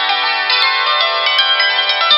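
Hammered dulcimer played with two hand-held wooden hammers: a quick run of struck notes, the strings ringing on beneath each new stroke.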